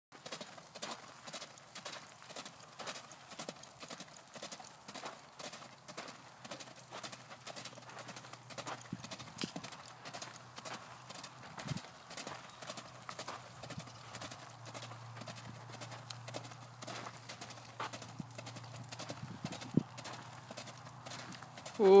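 Hoofbeats of a horse cantering in circles on a longe line over a dirt arena, a steady repeating rhythm of muffled strikes. Right at the end there is a short, loud 'mm' hum.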